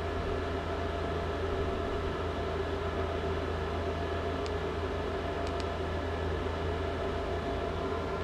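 Steady background hum with an even hiss and no music, with a couple of faint clicks about halfway through.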